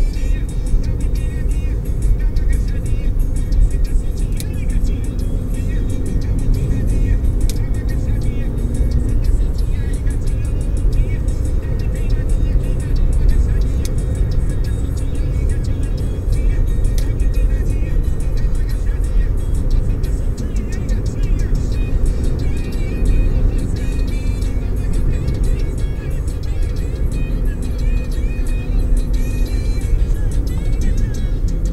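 Steady road and engine rumble inside a car cruising on a highway at about 60 to 90 km/h, picked up by a windshield dashcam. Music plays more quietly over the rumble.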